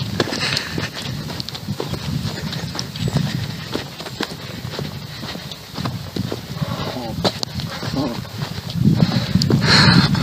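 Footsteps on stony, gravelly ground while walking, a string of short irregular clicks over a low rumble of wind on the microphone.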